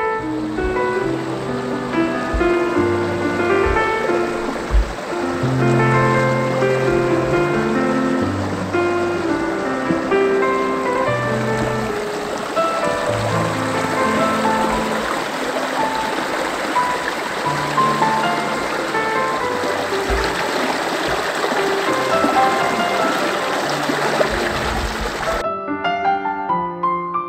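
Gentle piano background music laid over the running water of a shallow, rocky mountain stream. The water sound cuts off suddenly near the end, leaving only the piano.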